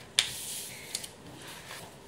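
Sheets of paper handled on a table: a sharp crisp snap about a fifth of a second in, then a short rustle of paper sliding and a light tick about a second in.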